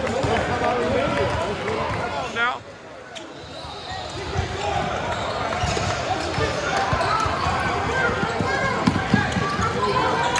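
Basketball game sound in a gym: spectators and players talking and calling out over a ball bouncing on the hardwood floor, with a short rising squeak just before a brief lull about two and a half seconds in.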